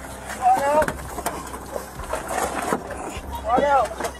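Men's raised voices calling out short shouts, one burst about half a second in and another near the end, over a steady low hum and a few faint knocks.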